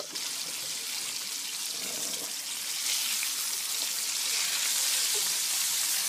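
Battered chicken frying in a pan of hot oil: a steady sizzle that grows a little louder from about halfway.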